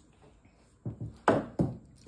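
A few quick dull thumps about a second in, the middle one loudest: a tossed, wrapped candy bar being caught and fumbled against a child's hands and chest.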